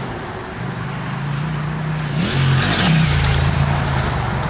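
Husqvarna Norden 901's 889 cc two-cylinder engine pulling as the motorcycle rides past. Its pitch rises just after two seconds in, dips briefly, then climbs again, and it is loudest about three seconds in as the bike passes close.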